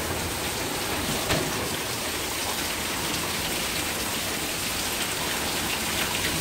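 Heavy monsoon downpour: a steady hiss of rain pouring down.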